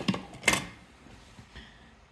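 A single sharp wooden knock about half a second in, from a wooden box purse being handled and turned on a wooden table.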